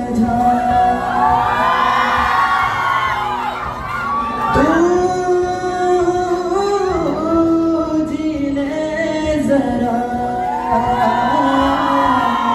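A man singing a song into a microphone over accompanying music, amplified through the hall's sound system, with long held notes that bend in pitch.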